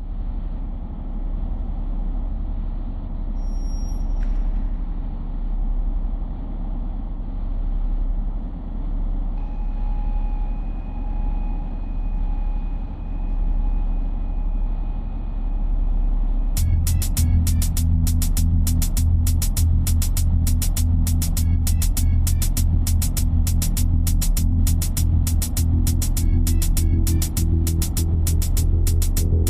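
Music: a low droning opening with faint held tones, then about sixteen seconds in a steady beat with a heavy bass line comes in.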